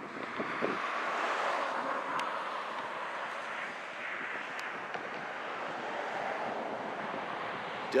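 Outdoor road noise: a passing vehicle that swells about a second in and slowly fades, with a few faint clicks.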